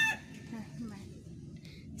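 The end of a rooster's crow: a long held call that cuts off just after the start, leaving quiet background under soft talk.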